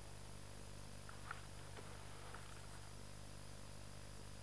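Quiet woodland with a faint steady hiss, broken by a few faint, brief high chirps from small birds about one and two seconds in.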